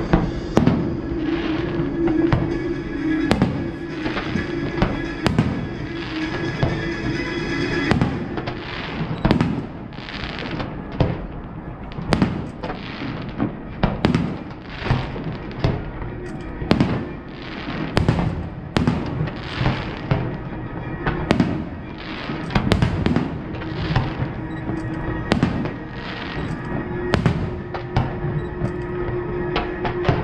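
Fireworks display: a long run of bangs and booms, sparse at first, then about one or two a second from roughly a third of the way in. Music plays underneath.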